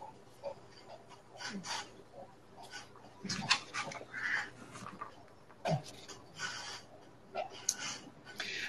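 Low-level background noise from several video-call microphones, with scattered faint clicks, rustles and a few short sounds that may be breath or voice.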